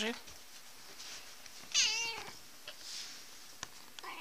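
A domestic cat meowing once, a single call about two seconds in. A small sharp click comes near the end.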